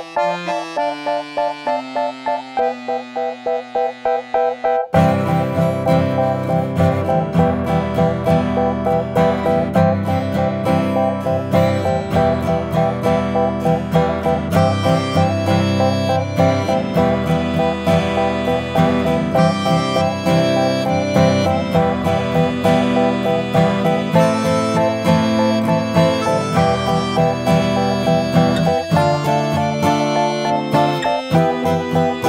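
Calm instrumental pop music led by acoustic guitar. A sparse opening part gives way, about five seconds in, to the full arrangement with bass and a steady beat.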